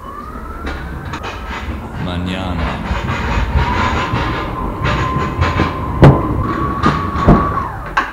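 Linde T16 electric pallet truck driving along a trailer's wooden floor. Its electric drive whines, rising in pitch at the start and then holding steady, while the forks and chassis rattle and clatter over the floor. Two loud knocks come about six and seven seconds in.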